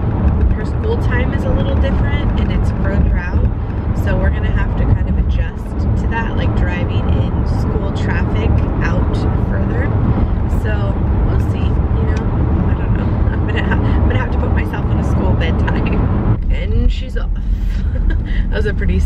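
A woman talking over the steady low rumble of road and engine noise inside a moving car's cabin.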